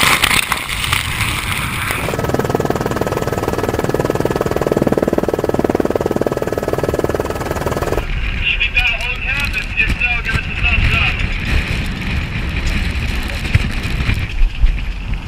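Storm wind and rough water rushing over the microphone, with the sound changing abruptly twice. In the second half a person's voice calls out for about three seconds over rumbling wind and water.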